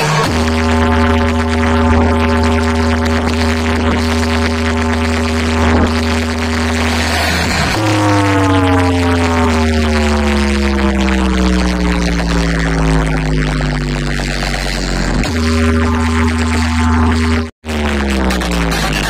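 Deep humming test tone played through a wall of DJ speaker boxes: a steady low drone for about the first eight seconds, then a new tone that slowly falls in pitch, then a steady drone again. The sound cuts out suddenly and briefly near the end.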